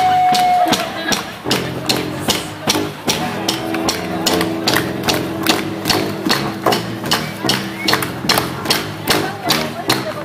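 A live rock band playing: a drum kit keeps a steady beat of about three hits a second under electric guitar and bass. A long held guitar note fades out about a second in.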